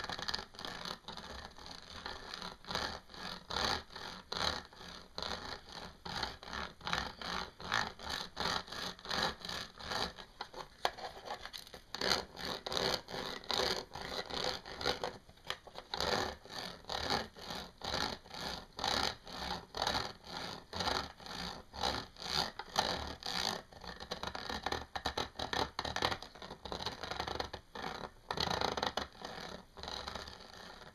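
Fingernails scratching back and forth over a textured, dotted sheet, in quick repeated strokes of about two to three a second.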